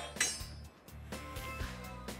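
Background music with a few light metallic clinks from a snowmobile skid frame being handled, the loudest just after the start.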